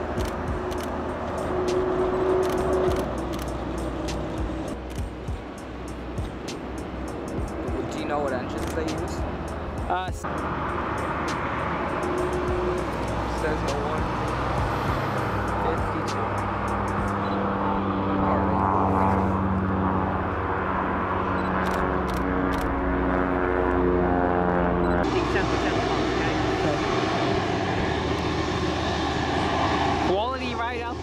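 Boeing 737-800 jet engines running steadily as the airliner taxis, with a held hum in the middle stretch and clicks of wind or handling noise on the microphone.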